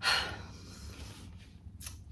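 Paper rustling as a printed poster and its envelope are handled, a short rustle right at the start and a brief one near the end.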